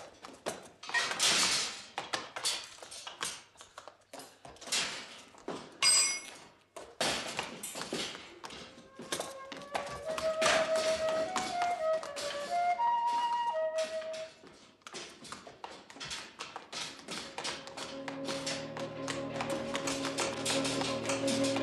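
Rapid knocks and clatter of a fight scene, with a ringing metallic clang about six seconds in. A short melody on a flute-like wind instrument comes in about nine seconds in, and sustained film-score music takes over near the end.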